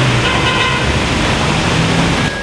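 Loud, steady road traffic noise.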